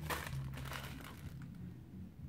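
Paper rustling and crinkling as printed paper inserts and a card are handled, busiest in the first second and then thinning out.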